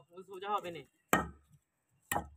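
A single sharp hammer blow on a nail set in a wooden plank, a hard knock with a dull thud under it, about a second in.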